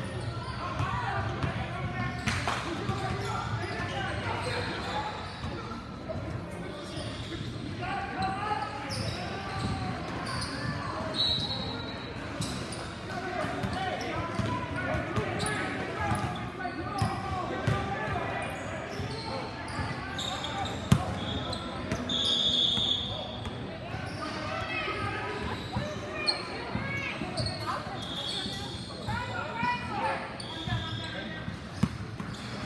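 Indoor basketball game sounds: a basketball bouncing on the gym floor, players' and spectators' voices echoing in the hall, and short high squeaks of sneakers on the court, one loud knock about two-thirds of the way in.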